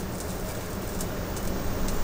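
Covered saucepan simmering over a low gas flame: a steady low rushing noise with a few faint ticks.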